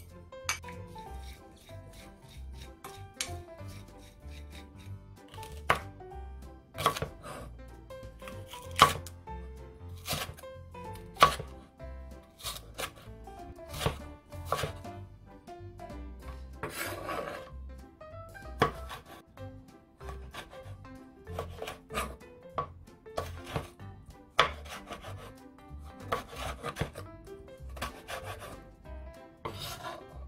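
A chef's knife cutting green onion and red chilli on a wooden cutting board: irregular sharp knocks of the blade striking the board, several of them loud.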